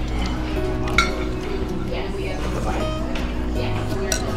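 Background music with voices underneath, and a metal spoon clinking against a ceramic noodle bowl about a second in, with fainter clinks after.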